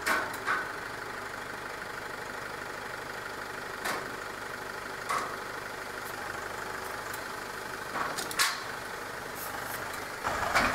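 Compact tractor engine running steadily as its front loader lifts a corrugated metal culvert pipe off a trailer. Several sharp metallic clanks break in as the pipe shifts and knocks, the loudest near the end.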